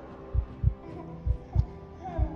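Heartbeat sound effect: two lub-dub double thumps, about one beat a second, over a faint steady tone.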